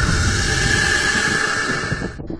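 A loud, steady hissing rush with a held whistle-like tone running through it, cutting off suddenly at the end.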